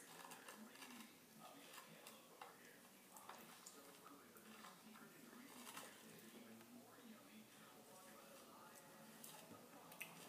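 Near silence: room tone with a few faint, scattered small clicks and ticks.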